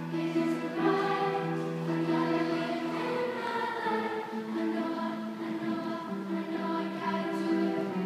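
A middle-school choir singing a pop song in harmony, with long held notes that shift pitch every second or two.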